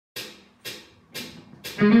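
Four evenly spaced count-in clicks, about two a second, then the band and electric guitar come in together near the end, much louder.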